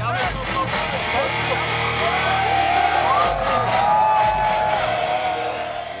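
Heavy metal band playing live: drums, distorted guitars and a held, bending melody line over a full, loud mix. It cuts in suddenly and fades out near the end.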